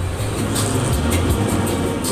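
Low rumble with light rattling from a 1958 Eli Bridge Ferris wheel turning, heard from a car as it comes down past the loading platform.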